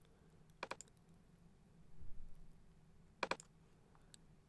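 Two brief clusters of computer mouse clicks, one about a second in and one near the end, over quiet room tone.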